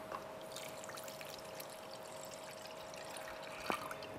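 Water poured from a measuring jug onto granulated sugar in a non-stick pot: a faint, steady trickling pour. A single light knock near the end.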